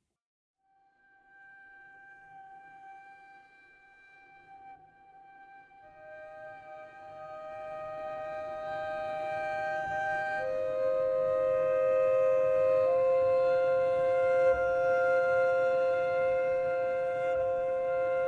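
Sampled solo double bass playing long bowed harmonics: clear held notes that come in one after another and overlap, the first about a second in and three more joining over the following seconds, the whole getting steadily louder.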